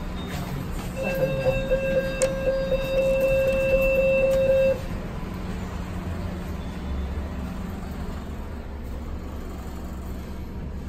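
Mitsubishi passenger lift: a steady electronic buzzer tone sounds for nearly four seconds, then cuts off suddenly, over the lift's low steady hum. A single click comes about two seconds in.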